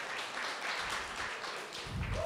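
An audience applauding: many hands clapping as a steady haze, easing slightly toward the end.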